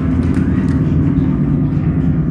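Grand piano played in its low register: a dense, sustained mass of low bass notes with a fast, trembling texture.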